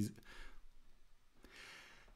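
A man's faint breathing in a pause between sentences: a soft breath early on and another breath near the end.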